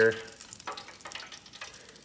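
Hot oil crackling and sizzling faintly in a countertop electric deep fryer used for battered cod.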